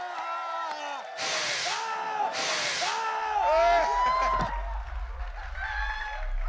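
Several people laughing and shrieking loudly in high, wavering voices, with two short bursts of hissing noise about one and two and a half seconds in.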